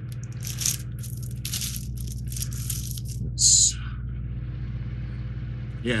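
Clear plastic bag crinkling and rustling as a plastic model-kit parts tree is pulled out of it, in a run of crackles with the loudest about three and a half seconds in. A low steady hum runs underneath.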